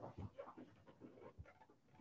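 Near silence: faint room tone with a few soft, brief sounds in the first second.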